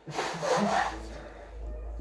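A man blowing his nose into a tissue: one short noisy blow lasting about a second, then fading to a faint low rumble.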